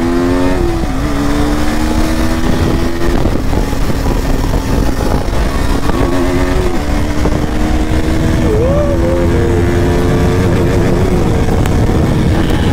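KTM RC 200's single-cylinder engine pulling hard at high revs under full acceleration to about 100 km/h. Its note climbs slowly with gear-change dips about one and three seconds in, over heavy wind rush on the helmet-mounted camera.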